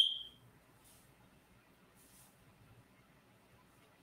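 A single short, high electronic tone, a beep that fades out within about half a second.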